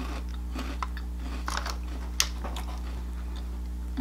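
A cheese-flavoured Cheetos snack being chewed: a run of small, irregular crunches, the sharpest about two seconds in, over a steady low hum.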